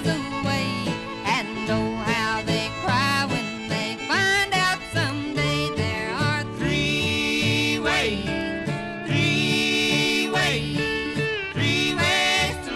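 Country-and-western band playing a song: pitched melody lines that slide in pitch over a steady, rhythmic bass.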